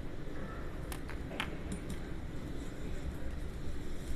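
Low steady background hum with a few faint, sharp clicks just after a second in.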